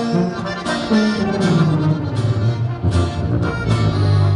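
Norteño band playing an instrumental break: accordion carrying the melody over tuba bass notes, with saxophone and guitar, at a steady beat.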